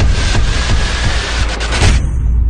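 Electronic logo-intro music and sound effects, a loud dense noisy build with a faint slowly rising tone, and a few sharp hits near the end.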